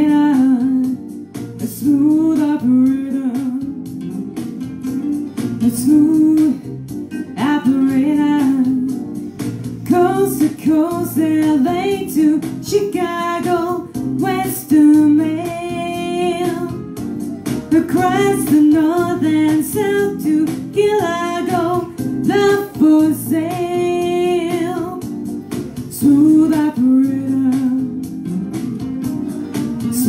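A woman singing a song with guitar accompaniment, her held notes wavering with vibrato.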